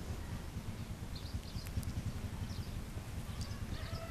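Outdoor ambience: a low steady rumble with a few faint, short bird chirps.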